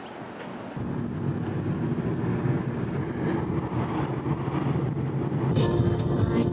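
Car driving, heard from inside the cabin: steady low engine and tyre rumble that starts suddenly about a second in. Music comes in near the end.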